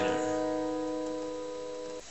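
An E minor chord shape on a capoed acoustic guitar, strummed just before and left to ring out, fading steadily with no new notes.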